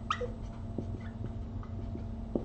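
Felt-tip marker writing on paper: faint scratching and small taps, with a couple of short high squeaks at the start, over a steady low hum.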